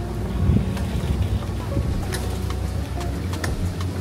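Wind buffeting the microphone, a steady low rumble throughout, with faint music underneath.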